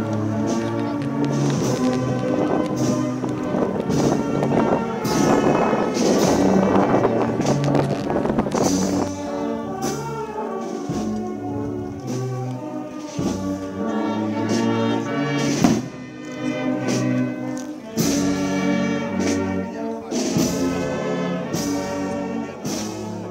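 A brass band plays a processional march, with sustained brass chords over a moving bass line and occasional percussion strikes.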